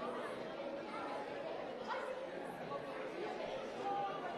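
Congregation chatter in a large hall: many people talking at once, voices overlapping and indistinct.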